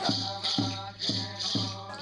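Bororo ritual chant: a low voice holding a steady note, accompanied by rattles shaken in a beat of about two strokes a second.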